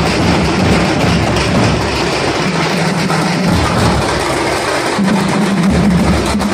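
Drums beating loudly in a street procession, with music and a recurring low held note over the dense, continuous din.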